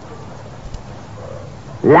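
A short pause in a man's sermon: only the steady hiss of an old recording, with a faint tick under a second in. His voice starts again near the end.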